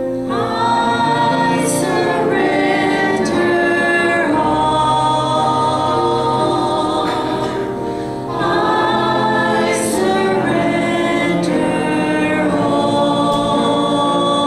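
A group of voices singing a slow hymn together in long held notes, with a brief pause between phrases about eight seconds in.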